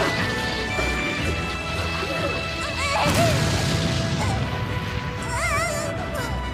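Cartoon explosion and crash sound effects as a monster is blasted, over sustained music, with wavering high-pitched cries about three seconds in and again near the end.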